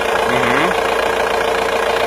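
Diesel car engine idling steadily, with a steady tone running over it; the engine is running on diesel with oxyhydrogen gas from a home-built electrolyser fed into it.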